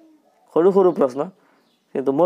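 Speech: one short spoken phrase from the narrator's voice, starting about half a second in, with quiet around it.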